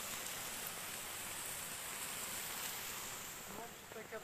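Small stream running over rocks, a steady rush of water that eases off a little near the end.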